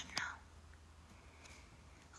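A woman's voice finishing a read-aloud question with one word, then near silence: room tone with a faint steady low hum.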